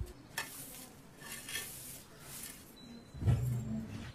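A stalk broom sweeping a dusty floor, three or four short scratchy swishes. Near the end a brief low-pitched hum is the loudest sound.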